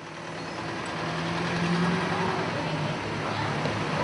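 Road traffic noise with a heavy vehicle's engine running. It fades in from silence, grows louder over the first two seconds, then holds steady.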